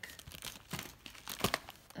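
Kraft paper packaging crinkling and rustling as it is handled, in irregular crackly bursts, loudest about one and a half seconds in.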